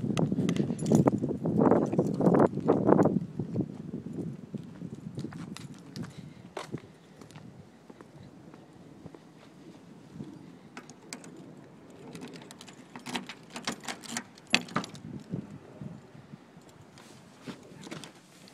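A bunch of keys jangling, with small clicks and rattles of handling, mostly quiet. A cluster of louder clicks and jingles comes about thirteen to fifteen seconds in.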